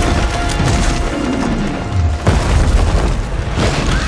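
A massive stone column crashing down and breaking apart, with deep booms and heavy rumble, and further sharp impacts about two seconds in and near the end, under a dramatic film score.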